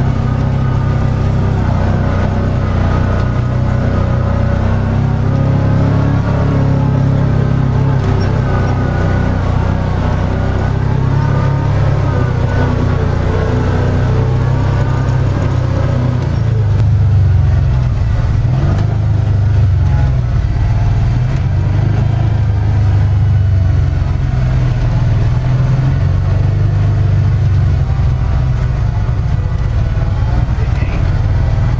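Background music over the low drone of a UTV's engine. The music fades out about halfway through, leaving the engine running, its pitch rising and falling as it works over the rock.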